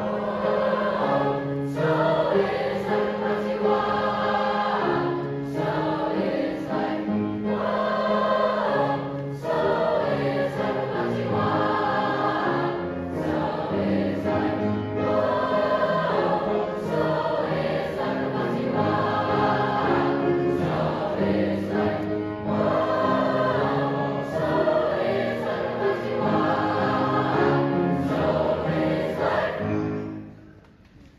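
Youth choir singing a feel-good Jamaican-style song in several parts, accompanied by piano.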